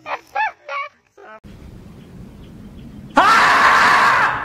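Men laughing for about a second. Then, after a short hush, a sudden, loud, long scream from the 'screaming marmot' meme clip cuts in near the end.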